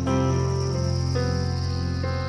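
Live instrumental passage on electric guitar and piano: sustained chords ring out, with new notes coming in at the start and again about a second in, over a thin, steady high tone.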